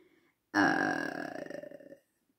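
A single long vocal sound without words from the woman, starting about half a second in and dying away over about a second and a half; it is louder than her speech around it.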